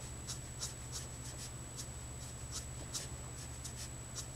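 Felt tip of a Letraset Promarker alcohol marker scratching over paper in short, quick strokes, about two or three a second, as it colours strands of hair.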